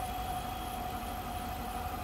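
5.7-liter Hemi V8 idling steadily, heard with the hood open, with a thin steady whine above the low rumble.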